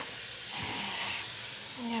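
Steady hiss of water running into a bathroom sink while clothes are washed by hand in it, with a brief brighter rush early on.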